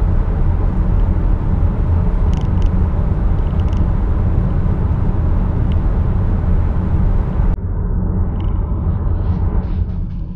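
Cabin noise of a third-generation Nissan X-Trail at about 80 km/h on studded winter tyres: a steady low hum from the tyres coming through poorly insulated wheel arches. Near the end the hiss above the hum drops away suddenly, leaving the low rumble.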